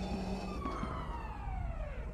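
Edited-in sound effect: several overlapping tones gliding down in pitch, like a siren winding down, over a steady low rumble.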